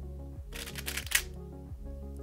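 Over steady background music, a quick run of plastic clicks and clacks from a GAN 356 Air SM 3x3 speedcube being turned fast through a short Ua perm algorithm, lasting under a second from about half a second in.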